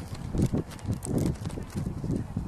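Muffled low thumps of footsteps walking on grass close to the microphone, about two or three a second, with a few faint clicks.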